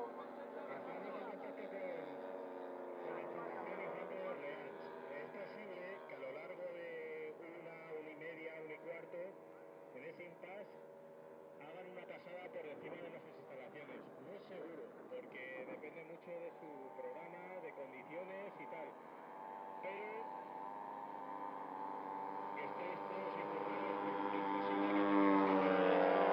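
Small engines of several radio-controlled model aircraft droning in flight, their pitches wavering as the planes turn and pass. One grows louder over the last few seconds as it comes in low.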